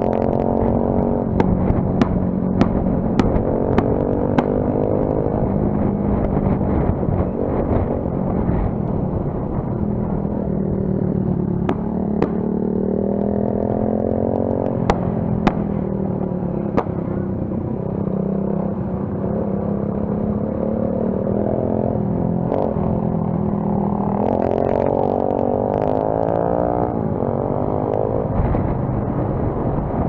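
Single-cylinder Royal Enfield motorcycle engine running under way, heard from the bike itself, its pitch climbing twice as it accelerates, about halfway through and again near the end. Scattered sharp clicks sound over it, most of them in the first few seconds.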